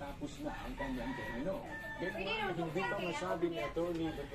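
A bird calling, with people talking.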